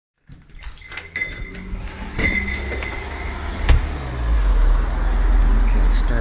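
Camera handling noise as the camera is brought out and swung about: rustling and a few clicks, one sharp click about three and a half seconds in. A steady low rumble follows from about four seconds in.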